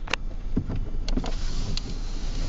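A car passing close by on the road, its tyre and engine noise swelling from about a second in, after a sharp click near the start.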